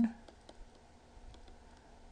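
Faint, sparse clicks and taps of a stylus on a pen tablet during handwriting.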